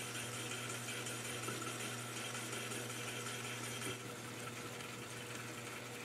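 Metal lathe running quietly and steadily while a parting blade slowly cuts through spinning brass stock, parting off a disc near the centre.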